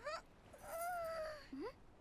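Faint, high-pitched anime character voice: a drawn-out "hmm" with a slight rise and fall, then a short rising "huh?" near the end.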